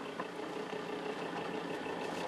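Steady engine hum and road noise heard from inside a vehicle rolling along a gravel road.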